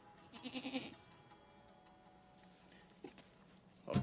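A goat bleats once, a short wavering call about half a second in.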